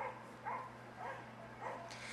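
A dog barking faintly in the background: four short barks about half a second apart.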